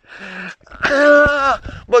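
A man's drawn-out vocal grunt, "aaah", held at one steady pitch for nearly a second around the middle: a tennis player's effort grunt on a stroke.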